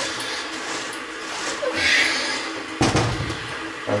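Boiling water sloshing inside a sealed stainless steel homebrew keg as it is swirled round by hand to clean it, then a single thump just under three seconds in as the keg is set down on the stainless steel sink drainer.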